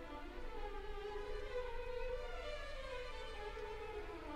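Orchestra playing a quiet passage led by bowed strings, held notes slowly changing pitch.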